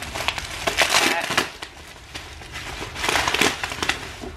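Packaging being handled and opened, rustling and crinkling in two spells: one about half a second in and one near the end.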